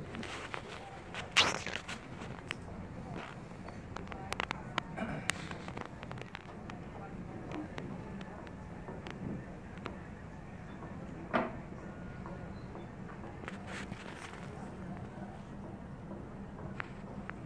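Indistinct background voices over a steady low hum, with scattered sharp clicks and knocks; the loudest knock comes about a second and a half in, and another about eleven seconds in.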